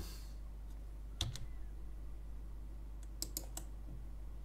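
A few faint computer keyboard clicks: two about a second in and a quick cluster of three or four near the end, over a low steady hum.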